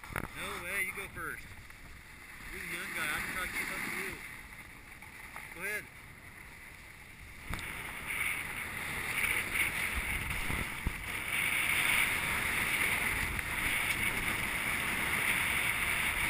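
A few short snatches of voice, then from about halfway in the steady hiss and scrape of a snowboard sliding over packed snow, with wind on the helmet camera, growing louder as speed builds.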